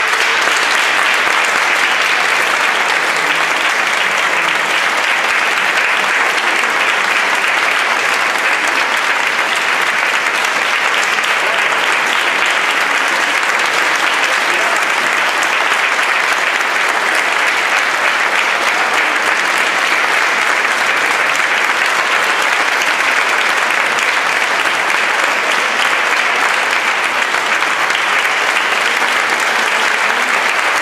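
Concert audience applauding steadily, a dense, even clapping that holds one level throughout.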